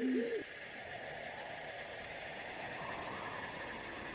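Forest nature-sound ambience: an owl gives one low hoot right at the start. After it comes a soft, steady rushing wash, with a thin high tone held throughout.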